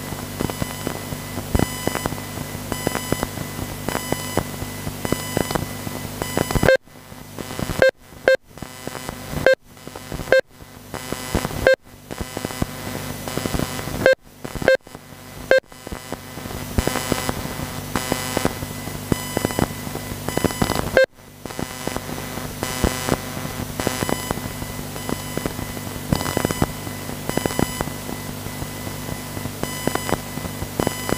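4WD RC cars racing round the track, their motor whine rising and falling over a steady hum. A string of about ten short beeps comes between about 7 and 21 seconds in.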